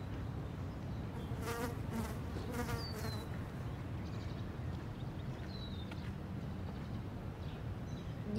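Steady low hum of outdoor ambience with a buzzing quality, with a few short, high falling chirps.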